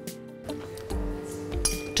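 Metal forks clinking a few times against ceramic plates as food is picked up, over steady background music.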